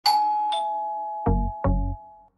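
Short logo jingle: a two-note ding-dong chime like a doorbell, the second note lower, then two deep bass hits close together near the end.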